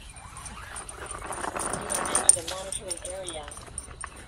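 A small dog whining in a wavering pitch for about a second, past the middle, after a short stretch of rustling noise.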